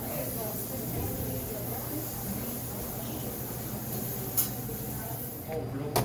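Busy restaurant room tone: indistinct voices of diners and staff over a steady hum and high hiss, with one sharp click about four and a half seconds in.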